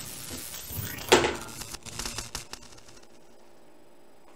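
Pool balls running out a cut shot: one sharp knock about a second in, then a few lighter clicks that die away by about three seconds.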